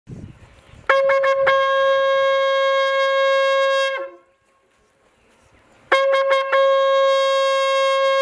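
A shofar sounded in two long, steady blasts, each opening with a few quick stuttering attacks. The first ends with a brief downward slide in pitch about four seconds in; the second starts about two seconds later and carries on.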